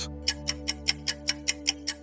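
Clock-like ticking sound effect marking a quiz countdown timer, about five quick ticks a second, starting a moment in. Under it runs a soft, steady background music drone.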